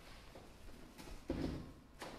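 A single dull knock about a second and a half in, over faint room tone, with a small click just before it.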